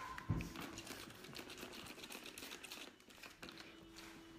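Faint quick spritzes from a hand spray bottle misting water onto oysters in a glass bowl to keep the shells from drying out: a soft knock, then a run of light clicks and hisses.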